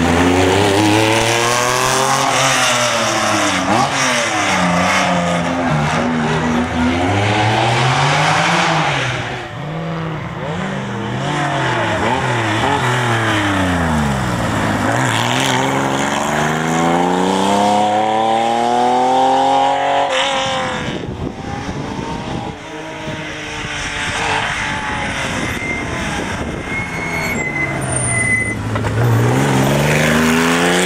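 Porsche 911 RS 3.0 rally car's air-cooled flat-six engine revving hard, its note repeatedly climbing as it pulls through the gears and dropping off between pulls. There are two abrupt breaks where one pass gives way to the next.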